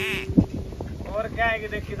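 A horse whinnying: a quavering call that starts about a second in and carries on. Before it, a short held tone ends with a click.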